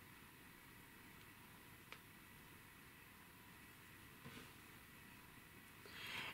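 Near silence: room tone, with one faint brief click about two seconds in.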